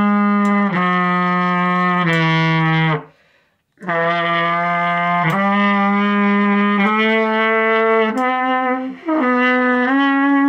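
Trumpet playing slow, held notes of an F-sharp major scale study, each about a second long. The notes step down, break for a breath about three seconds in, then mostly climb.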